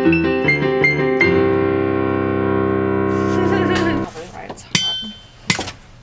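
Electronic keyboard with a piano sound played in chords, then one chord held steadily for a few seconds before it cuts off suddenly about four seconds in. A few sharp clicks follow near the end.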